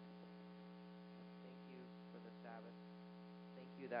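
Steady electrical mains hum in the audio feed, with faint spoken words of a prayer in the middle and a word near the end.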